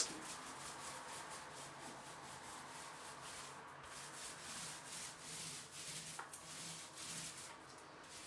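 Faint rubbing of a 4-inch mini paint roller, wet with primer, rolled up and down over vinyl wallpaper in a run of short strokes.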